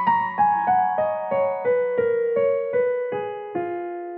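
Yamaha CLP-665GP Clavinova digital grand piano playing a soft melodic line, picked up by microphones in the room rather than straight from the instrument's output. Single notes about three a second step downward in pitch, and the last one is held and left to ring near the end.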